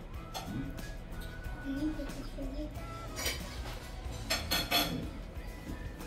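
Faint background music, with a few light clinks and scrapes of a metal serving spoon in a plastic salad bowl about three to five seconds in as salad is scooped out.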